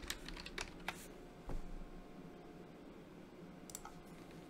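Computer keyboard keystrokes: a quick run of key taps in the first second, a single tap around the middle, and a couple more near the end.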